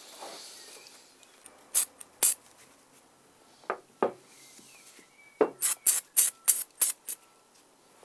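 Aerosol copper grease can sprayed in short puffs over brake caliper parts: two puffs, then a quick run of about six near the end, with faint handling noise between.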